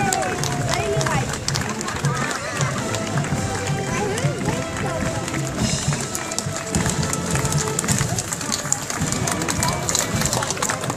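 Parade music with a regular low beat, mixed with the voices of onlookers talking nearby.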